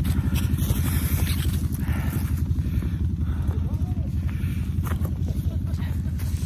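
ATV engine running with a steady low rumble, with faint voices in the background.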